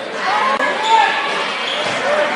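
A basketball bouncing on a hardwood gym floor during play, with short squeaks in the first second, over crowd chatter.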